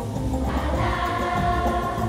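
Children's choir singing in unison over instrumental accompaniment with a steady beat.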